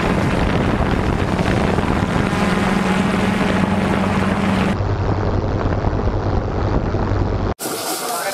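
Quadcopter drone's propeller hum with wind rushing over its microphone, steady and loud. About two-thirds of the way through the hum drops to a lower pitch, and it cuts off abruptly just before the end.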